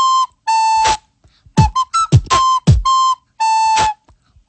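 Soprano recorder blown through the nose, playing a short repeating phrase of held notes, while mouth beatboxing adds low falling kick-drum thumps and sharp snare clicks in time with it.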